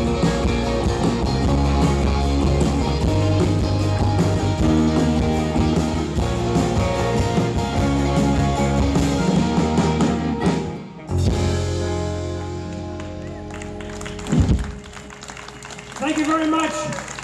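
Live band playing on electric bass, archtop guitar, banjo and drums. About two-thirds of the way through, the song closes on a held final chord that tails off, followed by one short loud hit near the end.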